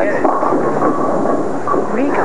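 Bowling ball rolling down the lane and crashing into the pins, with the pins clattering down over the rolling rumble of the lanes.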